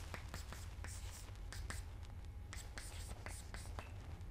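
Chalk writing on a chalkboard: an irregular run of short scratches and taps as an equation is written out, over a steady low room hum.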